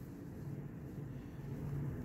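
Quiet room tone: a low, steady background hum with no distinct events.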